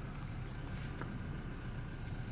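Steady low background rumble with a faint hum, with no distinct event standing out.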